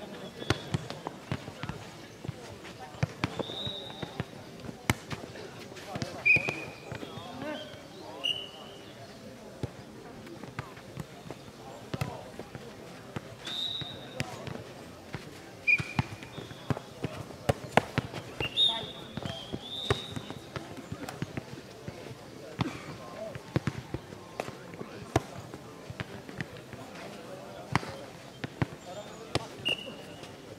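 Footnet ball being kicked and bouncing on a clay court, giving sharp thuds at irregular intervals, with a murmur of voices underneath.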